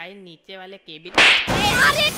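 A loud slap sound effect from an animated cartoon, about a second in, between lines of cartoon dialogue.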